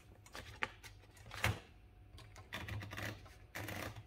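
Paper being fed into an Olivetti Lettera 22 typewriter by turning its platen roller: a few light clicks from the roller mechanism, the loudest about a second and a half in, followed by soft rustling and sliding of the paper sheet.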